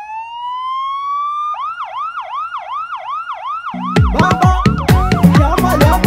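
Police-style siren winding up in one rising wail, then switching to a fast yelp of about two and a half sweeps a second. About four seconds in, a dance-music bass and drum beat starts under it.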